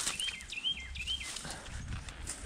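A bird singing a run of short, high whistled notes, each rising then dropping, about three a second, that ends a little past halfway. Faint footsteps in dry leaf litter sound beneath it.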